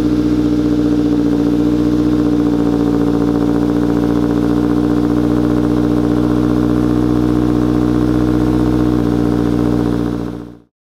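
Subaru Crosstrek's FB20 2.0-litre flat-four with an AVO turbo kit, idling steadily just after a cold start, heard from behind at its exhaust tips.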